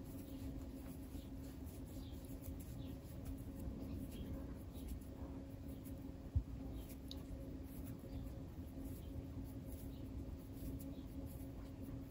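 Faint scratching and rustling of a crochet hook pulling cotton twine through loops as a chain is made, over a steady low hum, with one soft knock about six seconds in.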